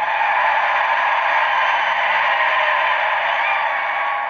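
Large arena crowd cheering loudly, swelling at the start and holding steady.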